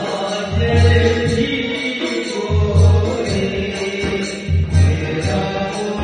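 A man singing a devotional-style chant through a microphone, accompanied by a rope-tensioned two-headed barrel drum. The drum's deep bass stroke comes about every two seconds under the vocal line.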